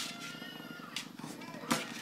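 Small dog giving a high-pitched whine lasting about a second, over a steady low buzz, followed by a couple of sharp knocks near the end.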